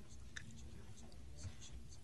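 A pause in speech: faint room tone with a low steady hum and a few soft, brief ticks.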